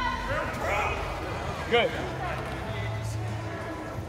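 Scattered shouts and short calls from players in a large indoor hall, one brief "Good" about halfway through, over a steady low background hum.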